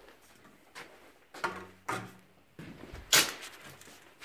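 A few short scuffing and rubbing noises. The loudest comes about three seconds in.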